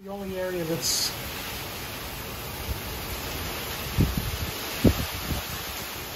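Hurricane wind and heavy rain: a loud, steady rushing noise that starts abruptly, with a short voice sound at the start and two brief louder sounds about four and five seconds in.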